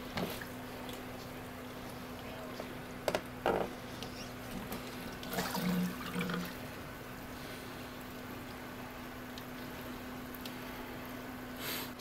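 Water from an aquarium sump drip tray washing across the perforated tray and falling through its holes onto the filter pad below, a steady splashing trickle. A steady low hum runs underneath, and a few brief bumps come around three and six seconds in.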